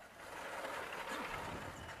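Chalk scraping and tapping on a blackboard as a drawing is made, a steady scratchy hiss.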